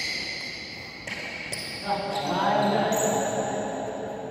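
Court shoes squeaking on an indoor badminton court during a doubles rally: several short, high-pitched squeals that start and stop abruptly. There is a sharp hit about two seconds in, and just after it a player's voice calls out for about a second.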